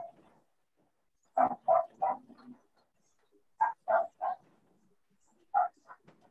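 A dog barking in short bursts: three quick barks about a second and a half in, three more a couple of seconds later, and a single bark near the end, heard over a video-call line.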